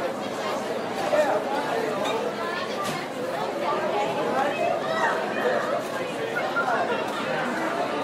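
Classroom ambience: many voices chattering at once, indistinct and overlapping, at a steady level, with a few light knocks.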